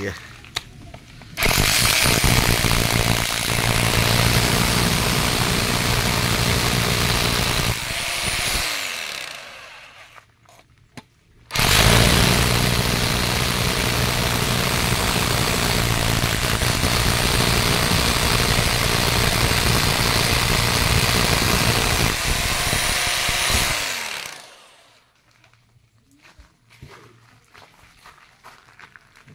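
Ingco 1050 W corded rotary hammer drilling into a masonry block, run twice: a run of about seven seconds, then a pause of about three seconds, then a longer run of about twelve seconds. Each time the trigger is let go, the motor winds down with a falling pitch.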